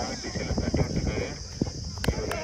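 Open-air ambience: a steady high-pitched hiss with irregular soft thuds and knocks scattered through it, and faint voices.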